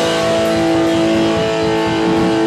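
Live rock band playing: electric guitar and bass guitar over a drum kit, the guitars holding sustained, ringing notes.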